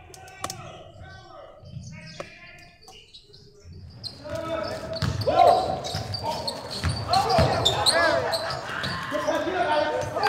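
Basketball bouncing on a gym floor during a game, with people's voices and shouts in the hall. It becomes much louder about four seconds in.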